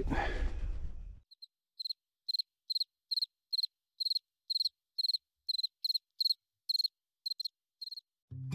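A cricket chirping in short, evenly spaced chirps, about two to three a second, beginning just over a second in as the campsite background noise fades out.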